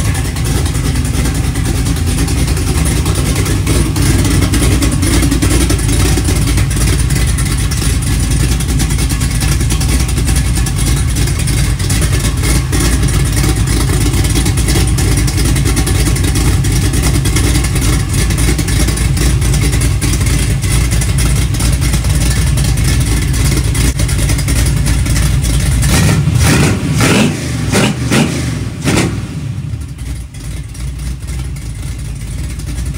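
Carbureted 365-cubic-inch LS V8 (a bored 6.0 LQ4) running on an engine stand through long-tube headers and mufflers. It holds a steady speed, and near the end it is revved several times in quick blips.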